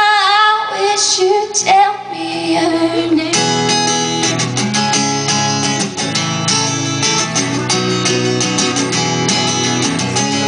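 A woman's sung line trails off about three seconds in, then a steel-string acoustic guitar carries on alone, strummed in a steady rhythm.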